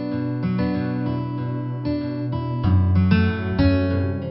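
Background film music led by plucked acoustic guitar, the notes changing about twice a second.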